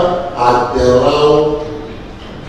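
A man speaking in Ewe into a microphone; the voice trails off near the end.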